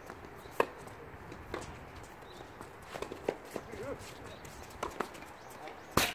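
Tennis rally on a hard court: a sharp pop of a racket hitting the ball about half a second in, then lighter knocks of strokes and ball bounces, a cluster around three seconds in and another near five seconds.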